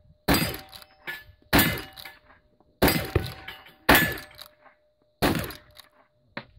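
Lever-action rifle fired five times in steady succession, about one shot every 1.2 seconds, each crack followed by a short echo. Fainter clicks come between the shots.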